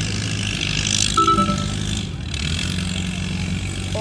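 Farm tractor engine running hard under load as it drags a weight-transfer sled, a steady low drone heard at a distance.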